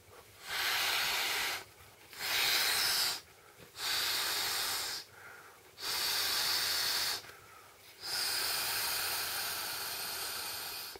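Breaths blown by mouth into the valve of an Intex vinyl air mat: five long rushes of air, each about a second, with short quiet gaps for inhaling between them. The last blow is longer, about three seconds.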